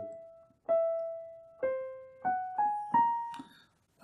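Digital piano playing single notes slowly: one note already ringing and then struck again, a lower note, then three notes climbing in quick succession, each left to ring and fade. The phrase is played to show a flawed run-through of the piece in which some notes did not sound.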